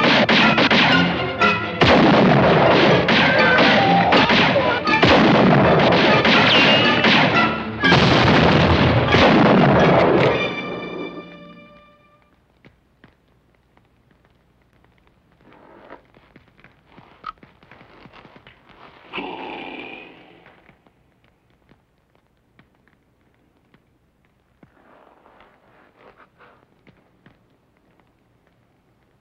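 A gun battle: repeated rifle shots over a loud orchestral film score, which ends on a held chord about eleven seconds in. After that it is much quieter, with only a few faint sounds.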